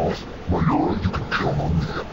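A voice warped by heavy audio effects, its pitch bending up and down without clear words.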